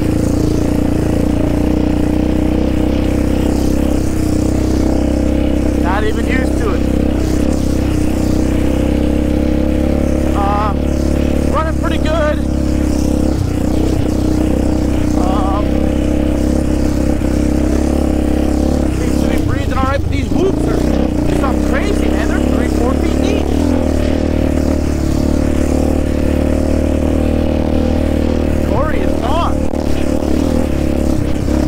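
Yamaha Raptor 700R ATV's single-cylinder four-stroke engine running at a fairly steady cruise, heard close up from the rider's seat.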